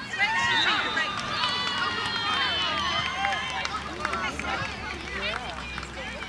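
Several voices calling and shouting over one another, many of them high-pitched children's voices, with a long drawn-out call about a second and a half in.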